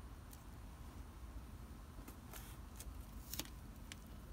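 Faint rustling of hands working loose potting soil around plant stems, with a few short crackles, the loudest about three and a half seconds in.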